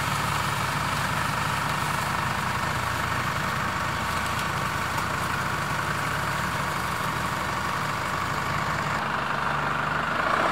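A four-wheel-drive's engine idling steadily.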